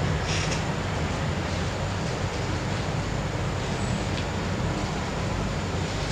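Steady low hum and hiss of room and recording noise, with no speech. There is a faint brief high sound about half a second in.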